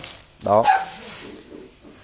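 A man says one short word, then faint rustling as a hand stirs and lifts a pile of cut wild orchid canes with dry leaves and roots.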